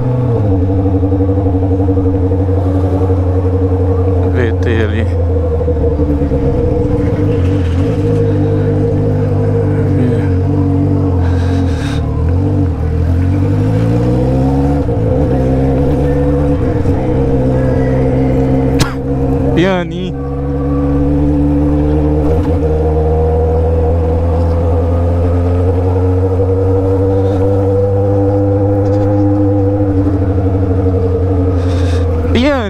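Honda Hornet's inline-four engine through a straight-pipe exhaust with no muffler, cruising with a steady exhaust note. About twelve seconds in the pitch falls and then climbs again as the throttle is eased and reopened, and about nineteen seconds in the note dips briefly before picking back up.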